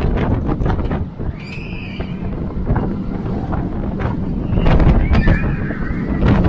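Wind buffeting the microphone and the rumble of a B&M hyper coaster train running fast on its steel track. High-pitched cries from riders rise over it about a second and a half in and again near the end.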